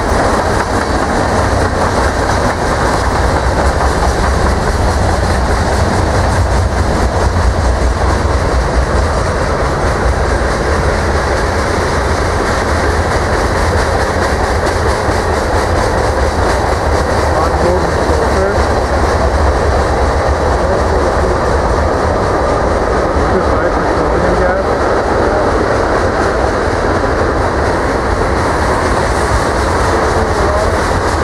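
Freight cars rolling past: a loud, steady rumble of steel wheels on rail, with clickety-clack over the rail joints.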